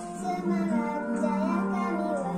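A child singing a Malay patriotic song over a musical backing track.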